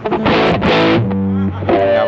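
Squier Bullet Stratocaster with Kin's single-coil pickups played through a distortion pedal: bright strummed chords, then held notes ringing out in the second second.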